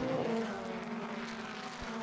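Several racing touring car engines running at high revs as a pack passes along the straight, the sound slowly fading away.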